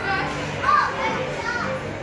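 Young children shouting and chattering as they play, with high, rising and falling calls.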